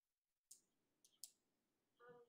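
Near silence: room tone with a few faint clicks, one about half a second in and two more around a second in.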